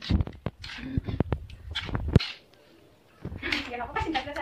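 A metal spoon clicking and scraping against a ceramic plate as grated food is mixed, a quick run of sharp clicks over a low rumble in the first two seconds. A voice comes in near the end.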